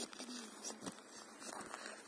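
Quiet outdoor ambience with a faint distant voice and a few soft crunching footsteps in snow.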